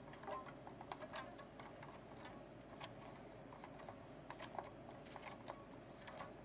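Faint, irregular clicking and ticking of a hand-worked Lego crank-and-string pulley mechanism, its plastic parts clicking as it turns.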